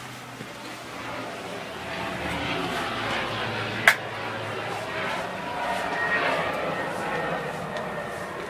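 A sharp single click about four seconds in, like a door latching shut, over a murmur of outdoor background that grows louder as the door opens.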